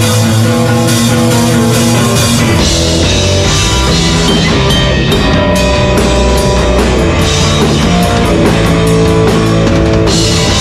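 Live rock band playing an instrumental passage on electric guitar, electric bass and drum kit. It opens on held, sustained notes, and the band comes in fuller about two and a half seconds in, with a steady drum beat running through the rest.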